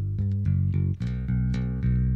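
Ample Bass P, a sampled virtual electric bass, playing a bass line from the piano roll with key-switched articulations. It plays a run of sustained notes that change pitch several times, with a brief dip about a second in.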